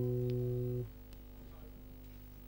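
A single held low note from an amplified stringed instrument of the band, slowly fading, cut off abruptly under a second in; after that only a faint low hum.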